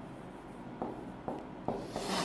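Marker pen writing on a whiteboard: a series of short strokes, a few each second, beginning about a second in.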